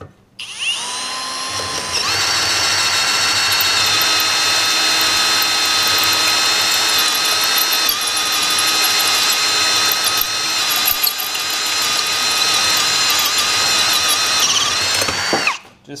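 Cordless drill turning a carbide-tipped annular cutter through a steel plate. The motor starts about half a second in and picks up speed at about two seconds. It then runs at a steady speed under cutting load, with a whining tone. It winds down near the end as the cutter breaks through.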